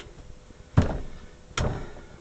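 Two heavy thuds of a lump of crank-and-porcelain clay being wedged on a wedging bench, a little under a second apart, the first the louder.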